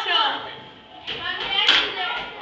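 People talking, with one sharp clack near the end.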